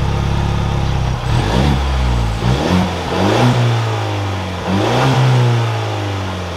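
A 2023 Ford Bronco's 2.3-litre EcoBoost turbocharged four-cylinder runs just after start-up, heard from behind the truck. It holds a high idle that drops about a second in, then is revved a few times, the longest blip about five seconds in.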